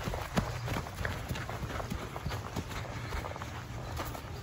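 Footsteps running on grass: a quick, irregular run of soft thuds, about three a second, over a low steady rumble.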